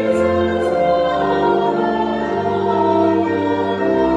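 A group of voices singing a hymn over held, sustained chords, the harmony changing every second or so.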